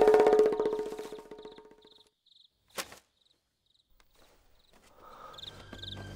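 A dramatic soundtrack note with rapid pulsing fades out over about two seconds, over crickets chirping at regular intervals. A single sharp click comes about three seconds in. Near the end, low sustained soundtrack music swells in.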